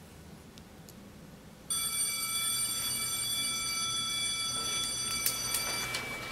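A steady, high-pitched electronic tone, like a classroom bell or alarm, starts abruptly about two seconds in and holds unchanged until it fades near the end.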